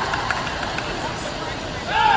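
Spectators and teammates yelling and cheering for butterfly swimmers over the wash of splashing water, the shouting growing louder near the end.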